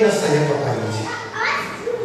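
Speech only: a man preaching into a microphone over the hall's sound system, his voice falling in pitch at the end of a phrase.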